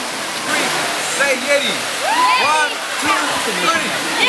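A small waterfall pouring into a rock pool, a steady rush of water, with several voices calling and shouting over it.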